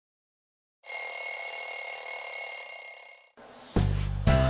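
An alarm clock ringing: a loud, steady, high-pitched ring that starts about a second in and stops after about two and a half seconds. Music with a deep bass comes in just before the end.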